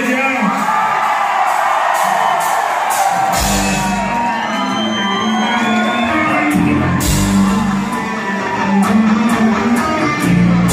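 Live band with electric guitars and drums, with a vocalist on a microphone, echoing in a large hall. The bass and drums kick in about three seconds in, and the crowd shouts and whoops.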